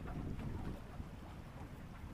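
Steady low rumble of wind buffeting the microphone.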